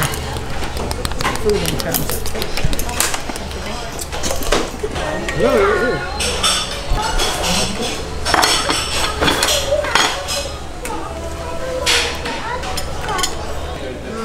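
Busy restaurant dining room: forks and plates clinking over background chatter from other tables, with a steady low hum underneath.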